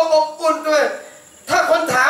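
A man's voice chanting in two long, melodic phrases with held, bending pitch, in the style of Quran recitation, with a short pause between them about a second in.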